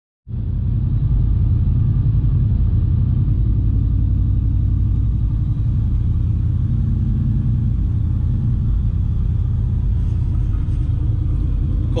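Ford Mustang Mach 1's 4.6-litre DOHC V8 idling steadily from a cold start on E85 fuel, a deep, even rumble heard from inside the cabin while the engine warms up.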